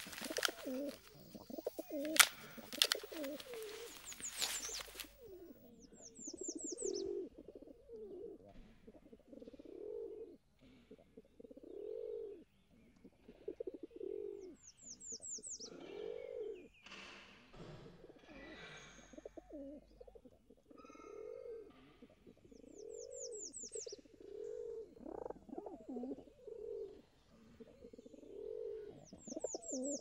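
Pigeons cooing over and over, each coo a low rising-and-falling call every second or two, with a small bird's quick high chirps in short runs every several seconds. Sharp clicks and rustling of a bag being handled fill the first few seconds and are the loudest sounds.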